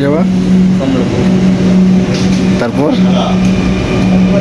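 Steady low hum inside a Dhaka Metro Rail carriage as the train runs, with a steady haze of noise under it.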